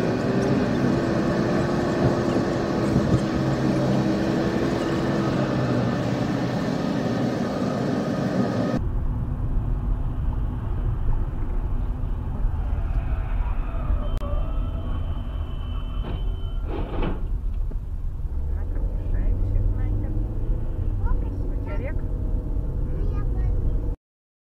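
Road and engine noise of a car driving at highway speed, heard from inside the cabin through a dashcam microphone. About nine seconds in the sound changes abruptly to a deeper, steady rumble. A brief high tone and a couple of sharp knocks come around sixteen seconds.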